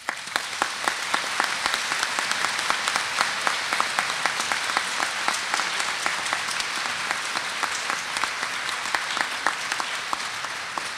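Audience applauding: many people clapping at once in a dense, steady applause that begins right after a name is announced.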